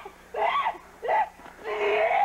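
Wordless vocal cries and wails from people scuffling, in three short bursts.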